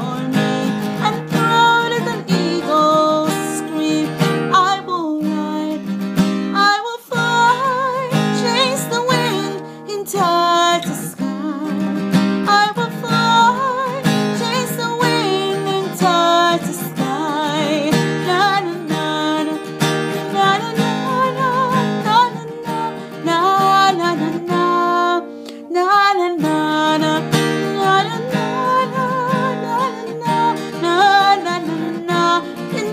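Acoustic guitar strummed in a fast, driving rhythm under a sung melody, with two brief breaks in the music.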